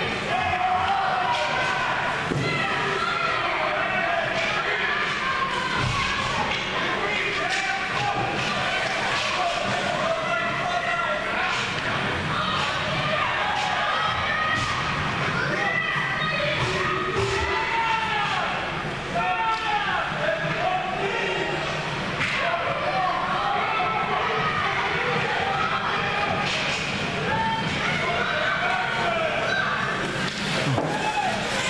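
Ice rink sound during a youth hockey game: spectators' voices and calls go on throughout, with scattered sharp thuds and slams, typical of pucks, sticks and players hitting the boards.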